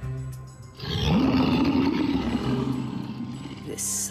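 A monstrous gargoyle creature roaring: a deep growling roar starts about a second in, rises in pitch and is held for a couple of seconds as it slowly fades, over dramatic background music.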